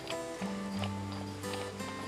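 Background music with held notes, over the clip-clop of a pair of draft horses' hooves on a dirt road as they pull a wagon.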